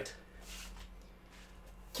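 Quiet small-room tone with a faint steady hum.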